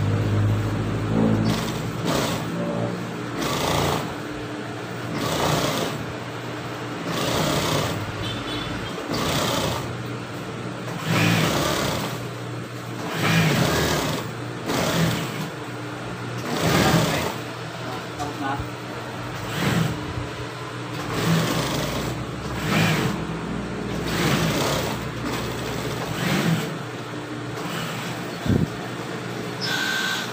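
Industrial sewing machine stitching binding onto a jersey in short repeated bursts, about one every second or two, over the steady hum of its motor.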